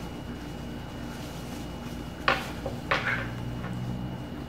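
Plastic gift bag rustling as it is untied and pulled open by hand, with two sharp crinkles a little over two seconds in, about half a second apart.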